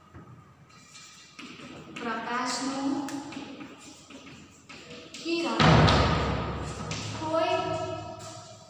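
A woman's voice speaking in short phrases. About five and a half seconds in there is a sudden loud thud with a low rumble that dies away over a second or so.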